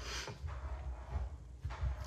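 Faint rustling and soft, irregular low bumps of hands kneading and rolling a lump of soft foam modelling clay (Crayola Model Magic).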